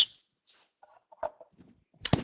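Near silence, with a few faint, brief blips around the middle.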